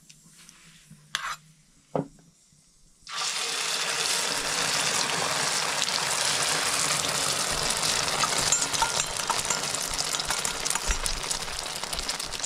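Beaten egg hitting hot oil in a frying pan, starting a sudden, loud, steady sizzle about three seconds in that keeps going as the egg fries. Before it, two short knocks.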